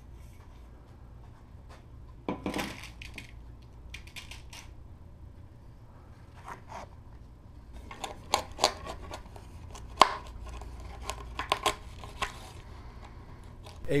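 Handling noise of a carbon fiber tube being worked off a metal mandrel by hand: a short paper-like rustle about two seconds in, then scattered clicks and taps, with a cluster around eight seconds and the sharpest click about ten seconds in.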